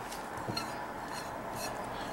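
Faint rustling with a few small clicks from hands handling a dried tobacco-leaf cigar wrap and a plastic bag over a plastic tray.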